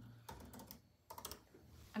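A few faint, scattered light clicks and taps, like fingers typing on keys.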